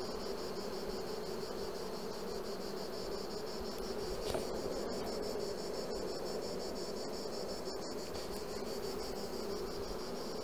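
Honeybee colony humming steadily from the open hive, with bees on the exposed frames. A steady high-pitched insect trill runs in the background.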